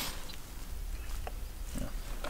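Low wind rumble on the microphone, with a couple of faint light clicks of lures being handled in a plastic tackle box.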